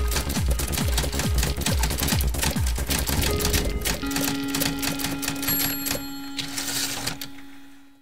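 A title-card music sting with rapid typewriter-style keystroke clicks over a pulsing bass, going with a text reveal. From about halfway it settles into one held low note, which fades out near the end.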